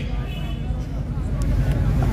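A steady low rumble of background noise in a pause in a man's amplified speech, with faint voices in the background.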